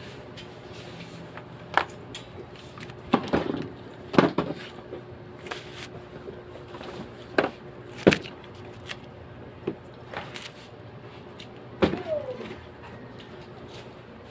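Cardboard boxes being handled and set down: about ten irregular knocks and clatters, a few of them louder, with quiet stretches between.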